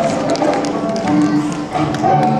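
Several pairs of tap shoes clicking on a wooden stage floor, irregular sharp taps over backing music with a steady tune.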